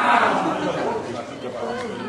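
Voices of several people talking and calling out, loudest at the start.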